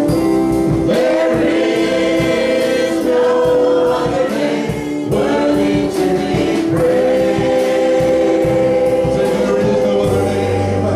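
A church worship band and singers perform a gospel praise song with instrumental backing and a steady beat. The voices hold long notes.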